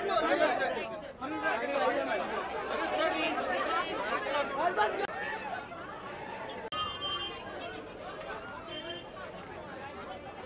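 Crowd chatter: many voices talking over one another at once, with no single voice standing out. About seven seconds in the sound drops suddenly and the chatter carries on quieter.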